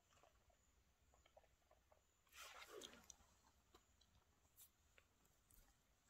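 Near silence with faint mouth clicks and smacks from someone chewing and tasting a piece of raw blusher mushroom (Amanita rubescens). A brief soft rushing sound comes about two and a half seconds in.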